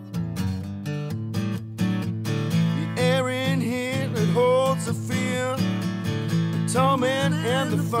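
Acoustic guitar strummed in a steady rhythm in a wordless passage of a rock song played acoustically. A higher, wavering melody line rises over the chords in the middle and again near the end.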